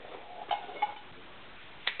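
Small hard objects handled while rummaging in a backpack pouch: a couple of faint clinks about half a second in, then one sharp click near the end.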